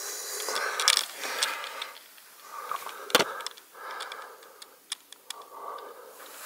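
Camera handling noise as it is moved down beside the bike: irregular rustling and scraping with a few sharp clicks, the loudest click about three seconds in.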